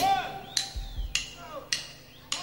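Four sharp clicks at a steady beat, nearly two a second, counting the band in on the tempo before the drums enter.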